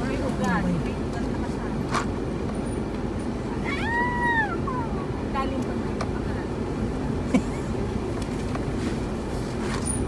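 Steady rumble of a vehicle driving slowly over a rough dirt track, heard from inside the cab. About four seconds in, one drawn-out call rises and falls in pitch over about a second.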